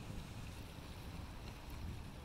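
Steady wind noise on the microphone over the wash of small waves on a rocky shore.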